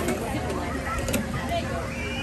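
Indistinct chatter of people's voices in the background over a steady low rumble, with a sharp click about a second in.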